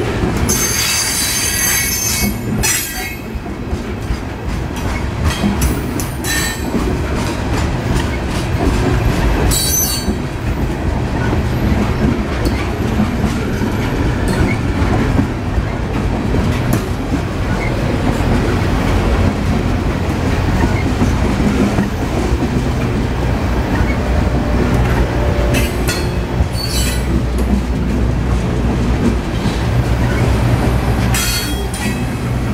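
Freight train of loaded refrigerated boxcars rolling past at a grade crossing, a steady low rumble and clatter of steel wheels on the rails. High-pitched wheel squeal cuts in near the start, again about ten seconds in, and once more near the end.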